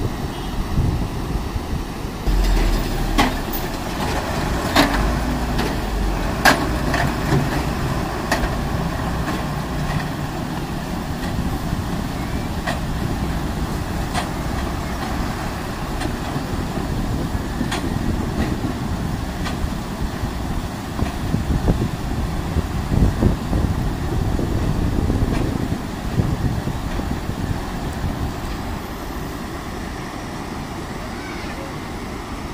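Swollen, muddy floodwater rushing across a road ford, with the engines of a bus and a truck driving through the water. A few sharp knocks come in the first half.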